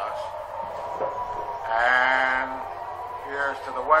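Air raid siren holding a steady tone, with a short wavering, voice-like cry about two seconds in and a briefer one near the end.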